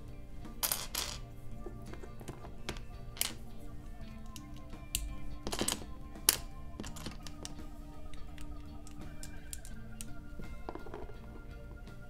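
Background music with steady held tones, over which plastic LEGO bricks click and rattle as they are handled and pressed together, in a scatter of sharp clicks.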